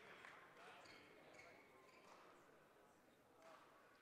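Near silence: faint sports-hall ambience with distant voices and a few light knocks.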